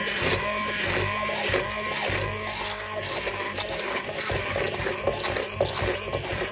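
Electric hand blender running steadily in a steel bowl of thickened cream, whipping it towards soft peaks. Its motor hum wavers up and down in pitch as the head works through the cream.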